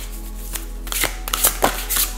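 Oracle cards being handled and drawn from the deck, with several quick papery snaps and flicks, most of them in the second half. Steady background music with held notes plays underneath.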